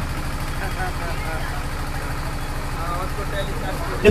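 A steady low engine hum, pulsing rapidly and evenly, with faint voices behind it.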